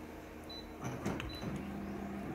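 Office colour copier's touch panel beeping twice with a few clicks as the copy job is started, then the machine's motors starting up in a steady hum as it begins printing.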